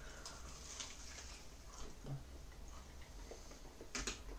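Faint chewing of toasted grilled cheese sandwiches: small crunches and mouth clicks over a low room hum, with a sharper click near the end.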